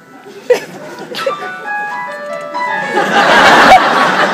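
Electronic keyboard playing a simple tune of single held notes, stepping down in pitch. About three seconds in, a loud burst of audience noise with laughter takes over.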